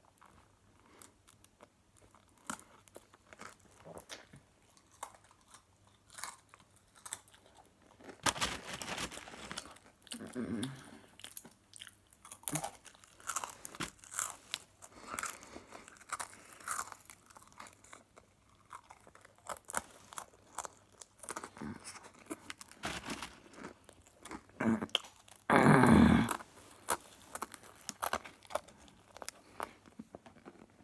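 Dry pretzel sticks being bitten and chewed in a long run of small crunches, denser from about eight seconds in, with a louder burst of about a second near the end.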